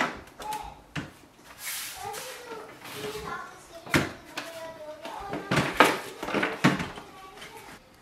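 Handling of a Pantum M6507NW laser printer: the power cord's plug is pushed into the socket on the printer's back, then the printer is turned around on the table. Several sharp knocks and clicks are spread through it, with faint scraping between them.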